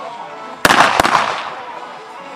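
Two loud blank-pistol shots about a third of a second apart, each with a short ringing tail, fired by the decoy during bite work to test the dog's steadiness under gunfire. Music plays underneath.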